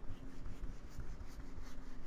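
A whiteboard being wiped with an eraser: soft rubbing strokes across the board, about three a second.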